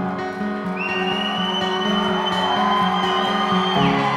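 Live acoustic band music: the instrumental opening of a song, with steady held chords. A single high, steady note enters about a second in and holds for about three seconds.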